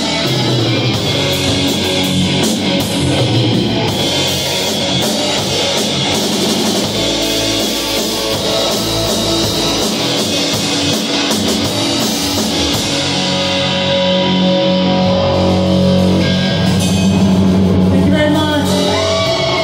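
A live rock trio playing: electric guitar, electric bass and drum kit together, with long held low notes in the last few seconds.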